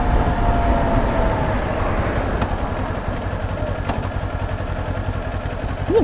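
Kawasaki Ninja 400 parallel-twin engine heard from the saddle as the bike rolls on and slows, the sound easing off gradually, with a faint falling whine in the first second or so.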